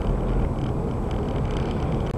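Steady road and engine noise of a car driving along, heard from inside its cabin.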